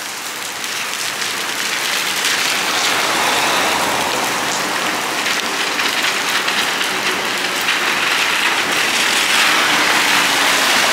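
Steady rain falling on wet pavement, mixed with the hiss of vehicle tyres on wet cobblestones. It grows louder as a Setra city bus draws up near the end.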